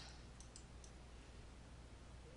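Near silence: low room hum with a few faint computer-mouse clicks in the first second.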